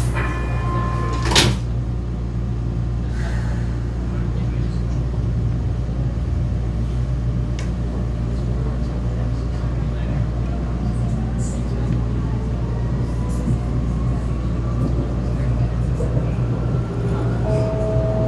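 Vienna U-Bahn metro train heard from inside the car: a steady low rumble and hum. A single sharp clack comes about a second and a half in, as the doors shut, and a faint rising whine follows as the train pulls away.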